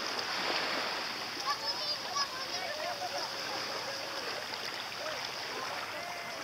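Small sea waves splashing and lapping steadily. Faint distant voices call out between about one and a half and three and a half seconds in.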